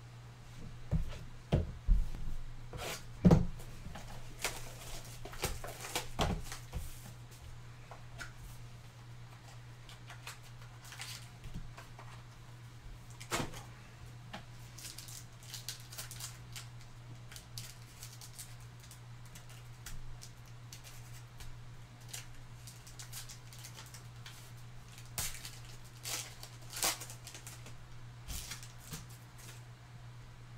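A sealed trading-card pack handled and torn open, its wrapper crinkling, with scattered sharp knocks and clicks of packs and cards on a tabletop, loudest in the first few seconds. A steady low hum runs underneath.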